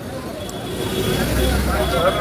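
Busy street traffic noise with background voices, and a motor vehicle passing close by, its low engine rumble growing louder in the second half.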